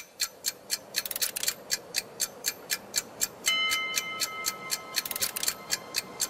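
Clock-like ticking in an animated intro's soundtrack: sharp ticks about four a second, with quick runs of faster ticks about a second in and near the end, and a high held tone from about halfway through.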